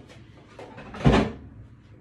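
A single sharp thump about a second in, out of a short rustle of handling noise.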